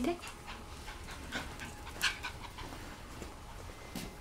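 A puppy at play on a hard floor, heard faintly: panting and small light ticks, with one sharper short sound about two seconds in.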